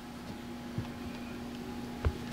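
Quiet room tone with a faint steady electrical hum, and one soft knock a little under a second in.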